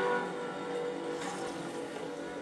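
Sound from a Grundig Majestic SO-160 radio's loudspeaker: a steady hiss with faint tones under it, the music coming through only weakly.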